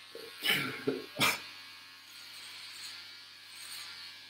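A man laughing: three short bursts of laughter in the first second and a half, then quieter.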